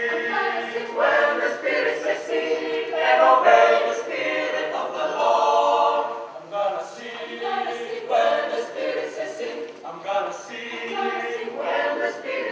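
A large group of people singing together in a slow song with long held notes. The phrases break briefly every few seconds.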